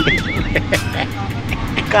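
Auto-rickshaw engine running and road noise heard from inside the moving cabin. A warbling tone sounds briefly at the start and stops about half a second in.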